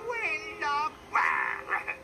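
Film soundtrack played from a television: a wavering, gliding voice-like cry over sustained music, then a short hissing noise a little after a second in.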